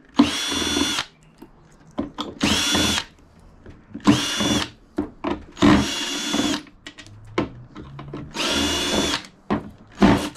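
Ryobi cordless drill-driver unscrewing screws from a plastic frame, in about five short bursts of under a second each, its motor whining steadily during each run. Small clicks and knocks of the bit and screws come in between.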